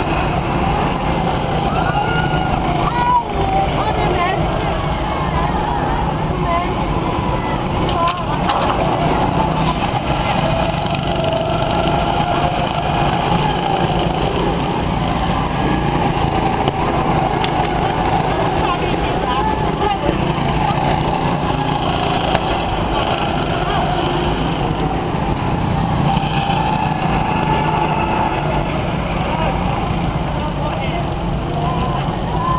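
Several go-kart engines running continuously as karts lap the track, their pitch wavering as they speed up and slow down, with voices mixed in.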